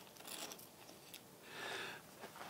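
Faint scraping of a metal putty knife drawn over wet thickened polyester resin filler, in two short strokes, with a small click between them.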